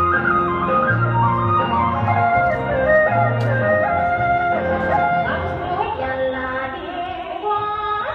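Music: a melody that steps from one held note to the next over a steady bass line, playing without a break.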